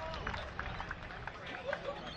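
Distant voices of players and onlookers calling out across the field, over a steady low rumble.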